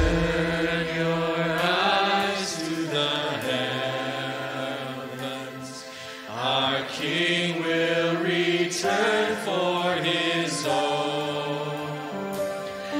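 Church worship band playing a slow song, with voices holding long notes over keyboard and acoustic guitar. The music eases off briefly about halfway through, then swells again.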